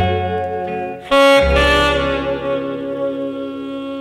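Saxophone music played back from tape on a Grundig TK 47 reel-to-reel recorder, taken straight from its line output: sustained sax notes over a bass line, with a sudden louder, brighter accent about a second in.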